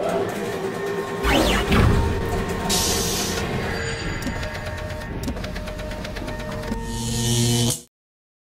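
Sound effects and music of an animated logo sting: whooshing sweeps and hiss over held tones and a deep rumble that comes in about a second in, with a last swell of hiss before it cuts off suddenly near the end.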